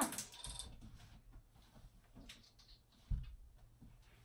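Faint handling noises of a small plastic makeup stick: light scattered clicks, with one soft low thump about three seconds in.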